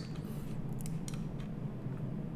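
A few light clicks of a computer mouse around the middle, over a steady low hum.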